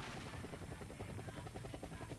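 A rapid, even chopping pulse, about ten beats a second, with a deep low end. It starts abruptly and runs steadily, in the manner of a helicopter-rotor sound effect laid over the intro.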